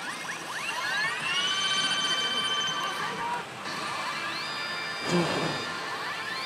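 Saint Seiya 'Kaiou Kakusei' pachislot machine playing its electronic presentation sounds: several tones rise together and level off into a long held chord, then a second rising sweep and hold near the end. This is the build-up to the machine's 'awakening' effect, which marks the bonus mode stepping up to its higher-payout stage.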